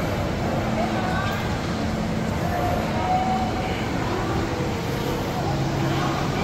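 Shopping-mall ambience: a steady low rumble with indistinct voices of shoppers in the background.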